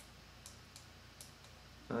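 Three faint, sharp clicks of a button being pressed on a handheld USB digital microscope.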